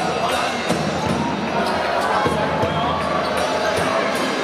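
Basketball dribbled on a hardwood court, its bounces heard over steady crowd chatter in an arena.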